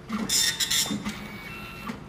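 Older-model Hitachi automatic bank passbook printer running, feeding the passbook out of its slot. Its mechanism gives short buzzing bursts in the first second, then a quieter steady whir, with one more burst near the end.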